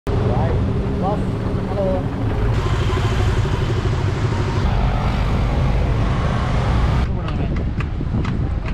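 Motorcycles and scooters running on the road, a steady engine and wind rumble from a rider's point of view, in a few cut-together clips. Near the end it cuts to a quieter scene with several sharp clicks.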